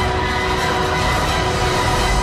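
Cinematic film soundtrack: long held tones over a heavy low rumble.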